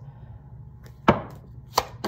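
Deck of tarot cards being handled for a shuffle, with two sharp clacks of the cards, about a second in and near the end.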